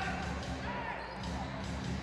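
Basketball arena game sound: music over the PA with a steady bass, a basketball being dribbled on the hardwood, and crowd voices.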